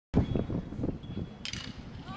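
Outdoor live sound with an irregular low rumble of wind on the microphone, and one sharp crack about one and a half seconds in.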